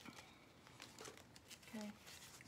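Faint rustling and crinkling of paper as kraft envelopes are handled, a few soft scattered crinkles.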